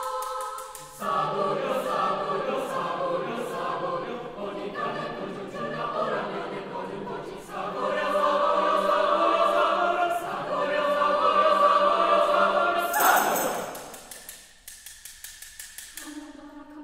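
A chamber choir singing a cappella. Higher voices are joined about a second in by the full choir, in close, sustained chords. Near the end the singing breaks into a short noisy rush, followed by soft, quick clicks.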